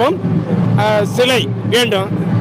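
A man speaking in Tamil in short phrases, over a steady low hum.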